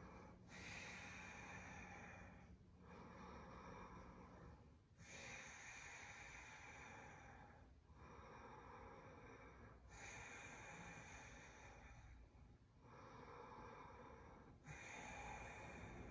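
A woman's faint, slow breathing while she holds a plank: long, even inhales and exhales of about two to three seconds each, roughly four full breaths, each breath counted.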